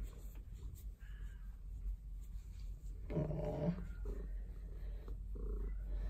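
Domestic cat purring steadily as her head is stroked, a low continuous rumble. A short pitched vocal sound comes about three seconds in.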